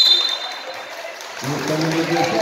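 Referee's whistle: one short, shrill blast at the start, fading within about half a second, over the hubbub of a gym crowd. A man's voice calls out near the end.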